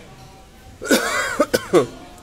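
A person coughing, starting about a second in and lasting about a second, with a harsh throat-clearing edge.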